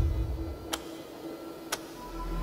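A clock ticking, two sharp ticks a second apart, over a faint steady tone as low background music fades out. A low hum comes in right at the end.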